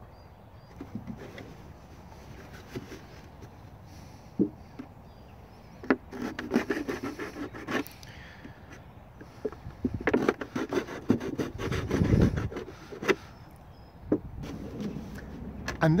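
A knife blade cutting and sawing into the side of a thin plastic milk carton. The plastic scrapes and creaks, with a few sharp clicks, in two stretches: one about a third of the way in and a longer one after the middle, which has a low handling thump.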